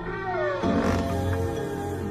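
A cat meows once, a falling call about half a second long, over soft background music with sustained tones.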